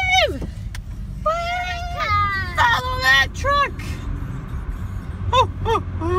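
A run of short, high-pitched children's calls and squeals, several in a row, over the low steady rumble of a moving car heard from inside the cabin.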